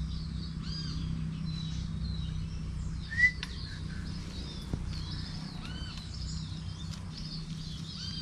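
Birds chirping and calling in repeated short arched notes over a steady low background rumble, with a brief sharp click about three seconds in.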